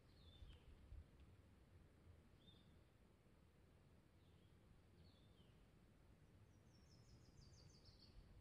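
Near silence, with faint bird calls: a few short chirps spread through, and a quick high trill near the end.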